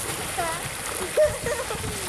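Water pouring steadily from a curved pool fountain spout and splashing into a thermal pool, with people's voices over it.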